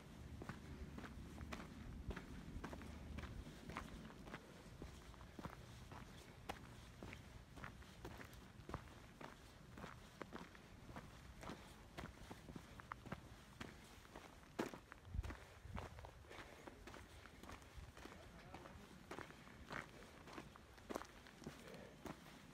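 Footsteps on a dirt and gravel trail at a steady walking pace, about two steps a second, with one louder knock about two-thirds of the way through.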